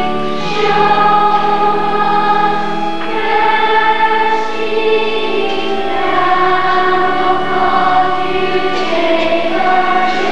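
Church choir singing a slow hymn in long held notes.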